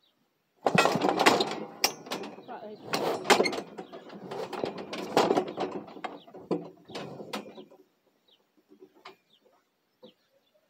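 Cattle squeeze chute rattling and clanking as the bull inside moves and shoves against it: a dense run of knocks and metallic rattles that starts about half a second in, goes on for about seven seconds and dies away near the end.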